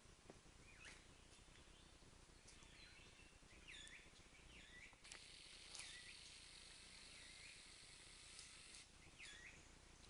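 Faint bird calls: a few short, swooping chirps scattered through an otherwise quiet background. A steady high hiss comes in about halfway.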